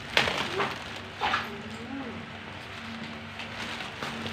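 A plastic courier pouch being torn open by hand, with three short rips in the first second and a half and lighter crinkling after.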